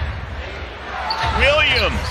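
Live NBA game sound from the court: a basketball bouncing on hardwood and sneakers squeaking over a steady crowd rumble in the arena, with a burst of gliding squeaks about one and a half seconds in.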